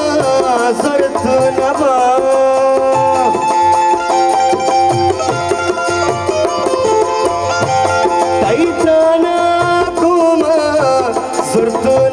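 Live Balochi folk music: harmonium with a hand-drum beat under a gliding melody line.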